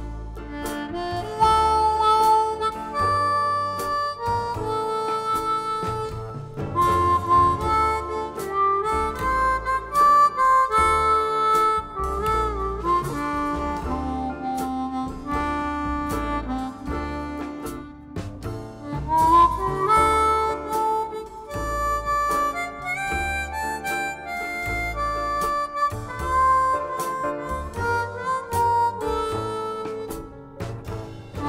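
Blues harmonica played cupped against a handheld vocal microphone, a slow melody of held notes with bends sliding up and down in pitch. It sounds over a backing track with a steady bass pulse.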